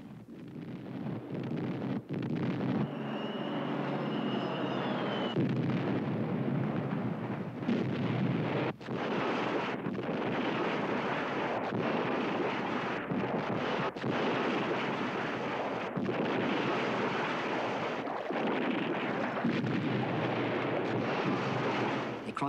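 Battle soundtrack of artillery fire and shell explosions: a dense, continuous din with a few brief breaks, and a faint whistling tone about three seconds in.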